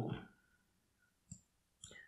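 Two faint, short clicks of a computer mouse, about half a second apart, in an otherwise quiet room.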